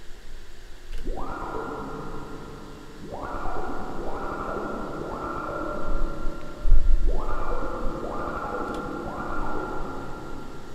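Electronic synthesizer notes begin about a second in, each opening with a quick upward filter sweep and then holding as a buzzy chord, repeating in a loose pattern. A deep low bass swells up about two-thirds of the way through.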